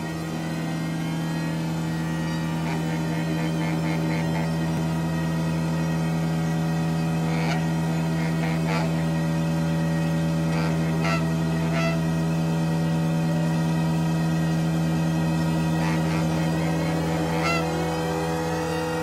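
Improvised live music from a clarinet, bass, drums and electronics group: a steady low drone held throughout, with sparse light clicks and a rising glide near the end.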